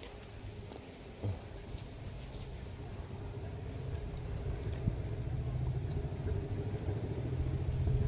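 Low engine rumble of a passing vehicle, growing steadily louder as it approaches, with a faint steady high tone throughout and a small knock about a second in.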